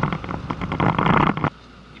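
Loud rushing vehicle and road noise in traffic that cuts off suddenly about a second and a half in, leaving only a faint low hum.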